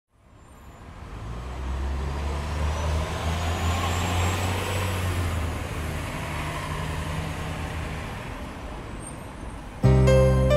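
A low, steady vehicle rumble with a noisy hiss above it, swelling in over the first two seconds and slowly fading away. Cumbia music cuts in abruptly just before the end.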